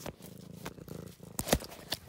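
Domestic cat purring right at the microphone, a steady low rumble, followed in the second half by a few sharp knocks as the cat's body bumps and rubs against the phone.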